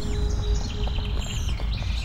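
Birds chirping in short calls over a steady low background rumble.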